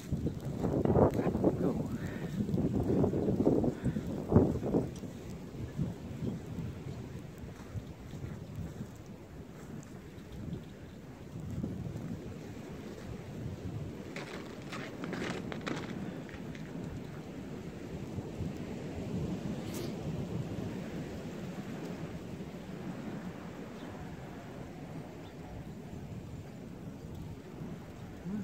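Wind gusting across the phone's microphone in falling snow, rumbling hardest in the first few seconds and then settling to a steady rush. A few short crunches, like steps in snow, come about halfway through.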